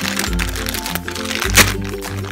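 A clear plastic bag of jigsaw puzzle pieces crinkling in the hands, then tearing open with a sharp crack about one and a half seconds in. Background music with a repeating bass line plays throughout.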